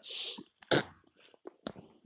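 A short breathy hiss, then a few faint clicks, one sharper than the rest just under a second in.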